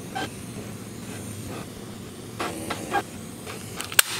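Steady soft hiss from the slotted brass tip of a handheld soldering tool, blowing heat onto heat-shrink tubing to shrink it over soldered charger wires. A few faint handling sounds come through near the middle.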